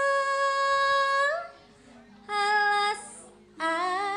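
A sinden, a Javanese female singer, singing into a microphone. She holds one long high note for over a second, stops, then sings a shorter note, and starts another near the end.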